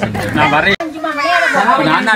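A group of adults and children talking and calling out over each other, with a momentary break in the sound a little under a second in.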